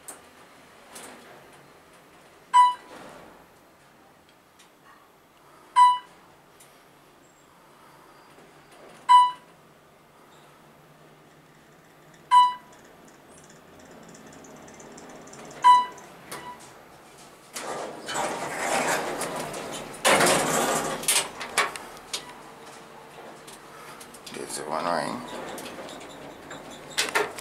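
Otis-modernized elevator's floor-passing beep sounding five times, one short pitched beep about every three seconds as the car climbs past each floor. In the last third a louder, rustling stretch of noise takes over.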